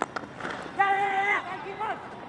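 Cricket bat striking the ball in a single sharp crack at the very start, followed about a second in by a man's shouted call, held for about half a second, and a shorter call near the end.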